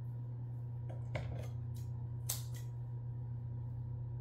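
A cockatoo's beak nibbling, heard as a handful of short, crisp snips and clicks, the loudest about two and a half seconds in, over a steady low hum.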